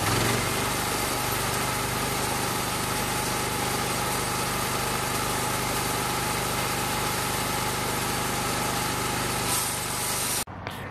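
Homemade band sawmill running, its small engine holding a steady speed.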